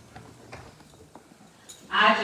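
A quiet, lull-filled hall with a few faint, scattered clicks and knocks. A woman's voice over the microphone starts loudly just before the end.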